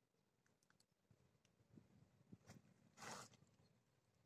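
Near silence with a few faint clicks, then one short swish about three seconds in: a fishing rod swung through a cast.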